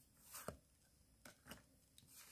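Faint handling of trading cards in the hand: a short slide about a third of a second in, then a few soft clicks as one card is moved behind the next.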